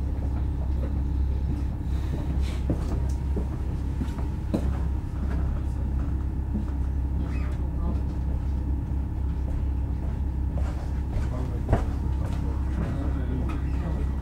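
Interior of an electric commuter train standing at a platform: a steady low rumble from the train's running systems, with a faint steady high hum and a few small clicks and knocks, one sharper about twelve seconds in.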